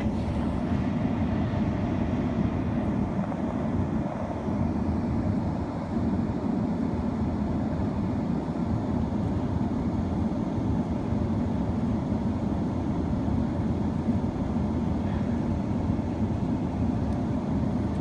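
Steady low rumble of an idling vehicle engine, even throughout.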